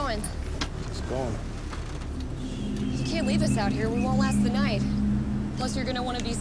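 People talking over the steady low rumble of an idling vehicle engine.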